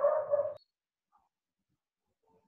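A dog vocalising once, briefly, at the very start, picked up by a participant's unmuted microphone on a video call.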